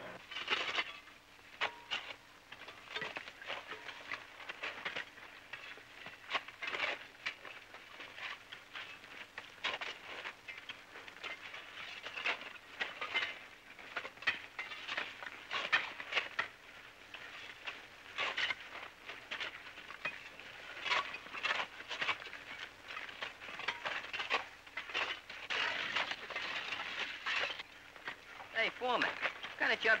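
Irregular knocks, chops and scrapes of hand tools (axes, picks and shovels) cutting wood and digging into earth and rock, from several workers at once.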